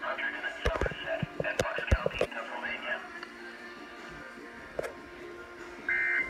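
Children's TV programme audio, a presenter talking over background music, played on a computer and picked up across the room, with several sharp clicks in the first two and a half seconds.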